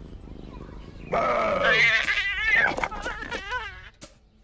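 A cartoon cat yowling: a long, loud cry that starts about a second in, first sliding down in pitch, then quavering with a fast wobble before it dies away near the end.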